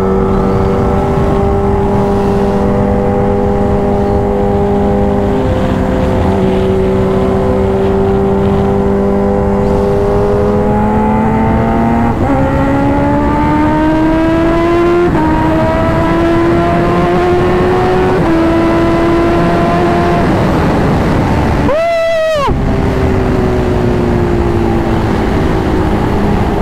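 Onboard sound of a Kawasaki H2R's supercharged 998 cc inline-four, running at a steady pitch at first, then climbing in pitch as the bike accelerates, with small steps where the gears change. Late on there is a brief break in the sound.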